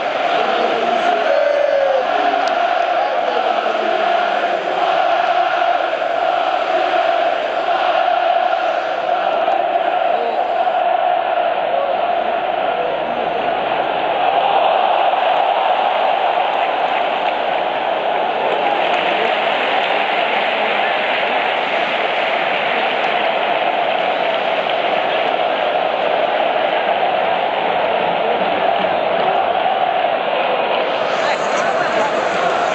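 Large stadium crowd of football supporters singing a chant together, a steady, continuous mass of voices that swells a little about halfway through.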